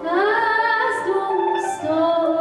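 A woman singing a Persian song. Her voice slides up into a long held note, then moves to a new note near the end.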